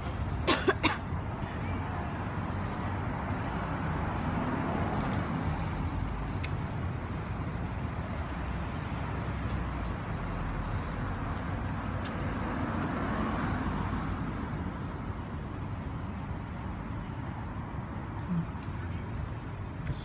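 Steady city road traffic noise, rising and falling gently as vehicles pass, with a few short sharp sounds about a second in.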